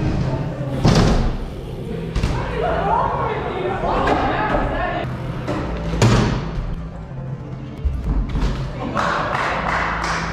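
Two sharp thuds, about a second in and about six seconds in, from BMX bike wheels landing on wooden ramps and a box.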